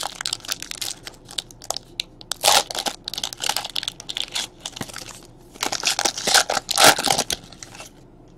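Trading cards and their plastic packaging handled close to the microphone: irregular crinkling and rustling that comes in clusters, busiest around the middle and again near the end.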